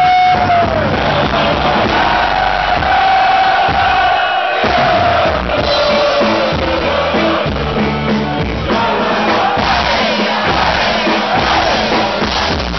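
Loud live party-band music with a crowd singing and shouting along, long held sung notes sliding down in pitch. The bass and drums drop out briefly about four and a half seconds in, then come back.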